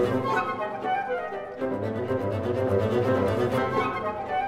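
Symphony orchestra playing: cellos and double basses repeat a low pulsing figure under a melody from flute and violins.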